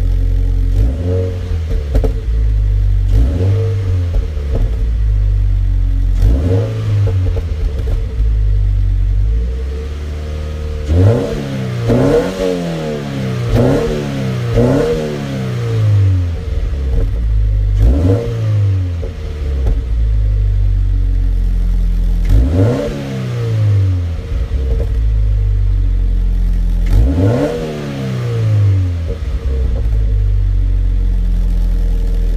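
Toyota 86's FA20 2.0-litre flat-four with a BLITZ Nur-Spec C-Ti exhaust, heard from inside the cabin, idling and being blipped in neutral. Short revs rise and fall back to idle every couple of seconds, with a run of quicker repeated revs in the middle.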